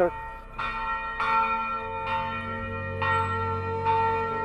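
Church bells ringing, with five strokes spaced under a second apart, each tone ringing on under the next.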